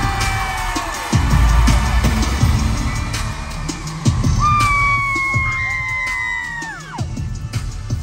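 Live pop concert music in an arena, recorded from the audience on a phone: loud, heavy bass, with a long high voice held for a few seconds in the middle that falls away at its end. The audience screams over it.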